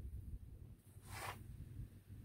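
Mostly quiet, with a faint low rumble and one brief rustle lasting under half a second about a second in.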